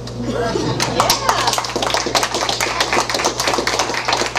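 Small audience applauding at the end of a song. Thick clapping starts a little under a second in, with voices calling out over it.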